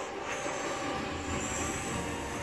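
Battle-scene sound effects of an animated episode played through a TV's speakers and picked up in the room: a steady rumble of an explosion and debris with a high, shrill whine over it from about a third of a second in.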